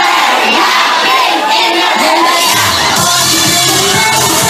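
Audience cheering over a loud K-pop dance track played through a PA. The bass drops out for a couple of seconds, then the beat comes back in about two and a half seconds in.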